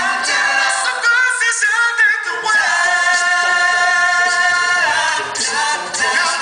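Male a cappella group singing live in close harmony through microphones. The low bass part drops out for about a second, then the voices come back together and hold one long chord.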